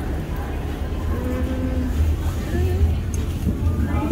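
Wind rumbling on the microphone over outdoor street noise, with a brief voice sound about a second in.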